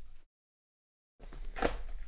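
Light handling noise, then a dropout of total silence lasting about a second, then soft rustling and a few sharp clicks of a cardboard box being opened by hand.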